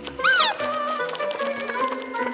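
Cartoon background music with steady held notes, and about a quarter second in a short, high, squeaky cry from a small cartoon creature that rises and then falls in pitch.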